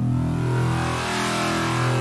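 Synthesized 'mech growl' sound-effect sample playing back in FL Studio: a steady, low, buzzing tone at one unchanging pitch with a rough, hissy edge.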